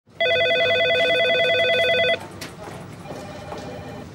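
Electronic desk telephone ringing: one loud warbling ring lasting about two seconds, then a much fainter trill about a second later.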